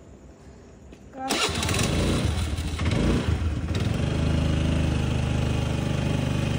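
Motor scooter's engine starting about a second in, then running at a steady idle.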